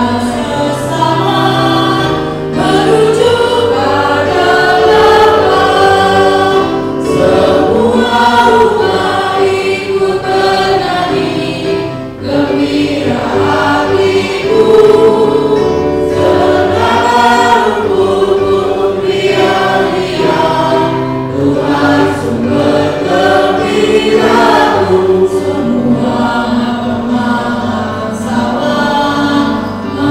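A group of voices singing an Indonesian-language church hymn together, in long sung phrases with a short breath about twelve seconds in.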